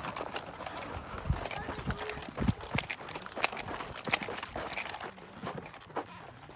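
Footsteps on dirt and gravel as people walk, with irregular clicks and knocks and a few low thumps.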